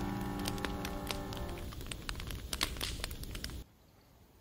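Wood fire crackling with sharp pops, under the last notes of a piano piece dying away in the first second and a half; the crackling cuts off suddenly about three and a half seconds in.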